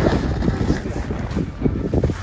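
Wind buffeting the microphone, a heavy low rumble that surges irregularly.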